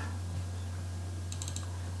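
A quick run of about four computer keyboard keystrokes a little over a second in, over a steady low hum.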